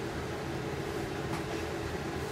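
Steady low mechanical hum with a faint steady tone, even throughout, with no distinct events.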